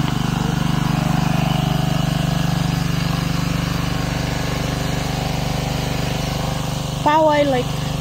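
A small engine running steadily with a low, even hum; a short voice cuts in near the end.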